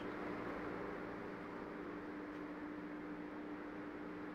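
A steady low hum with a faint hiss; nothing starts or stops.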